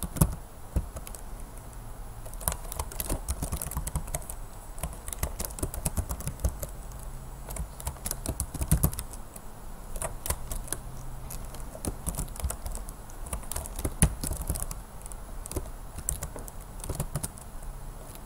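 Typing on a computer keyboard: a steady run of quick key clicks with brief pauses between words.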